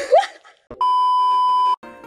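A steady electronic beep on one high pitch, lasting about a second: an edited-in sound effect. It is preceded by the tail of a sung line and a click, and plucked-string background music starts near the end.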